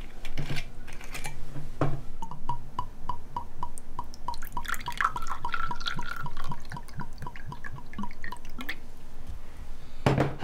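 Clear spirit poured from a glass bottle into a small glass, glugging in an even run of about four a second. A few knocks of tableware come in between.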